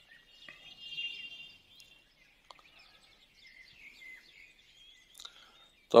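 Faint bird chirps in the background: a short run of thin, high calls about a second in, then scattered quieter chirps, with one faint tick about halfway.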